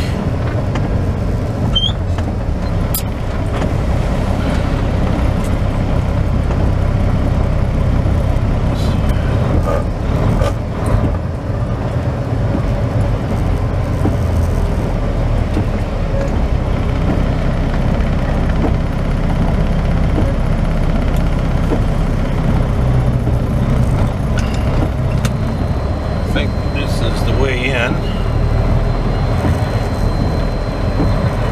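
Semi-truck diesel engine running steadily at low road speed, heard from inside the cab, with tyres on a rain-wet street.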